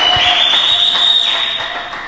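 A steady high-pitched whistle-like tone that rises slightly at first, holds for nearly two seconds, then stops, over a hissing background.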